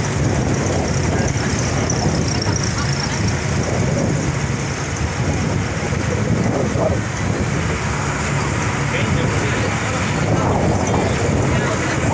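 Steady road and wind noise from a moving vehicle, with a low engine hum and indistinct voices now and then.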